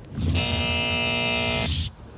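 Electronic time's-up sound effect: a steady buzzing tone about a second and a half long, ending in a brief rushing swoosh that cuts off suddenly. It signals that the speaker's countdown has run out.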